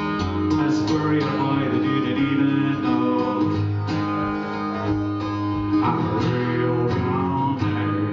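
Acoustic guitar strummed in a live solo performance, its chords ringing on between strokes.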